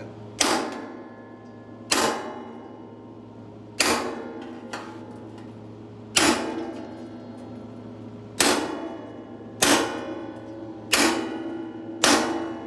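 Hammer striking a round-nosed chisel held on sheet metal, about seven blows at uneven intervals, each leaving the sheet ringing for about a second. The overlapping strikes are setting a flute groove into the sheet-metal seat pan.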